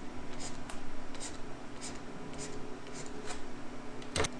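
A stylus scratching across a tablet screen in short strokes, about two a second, as hatch lines are drawn to shade a region of a graph.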